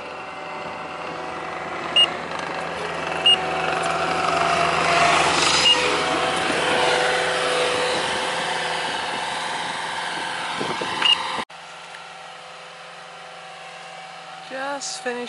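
Skid steer's diesel engine running while it works the gravel, growing louder toward the middle and easing off, with a few short high beeps at irregular spacing. It gives way to a quieter steady hum near the end.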